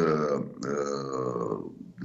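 A man's voice holding two long hesitation sounds, a short one and then one of about a second, each sagging slightly in pitch.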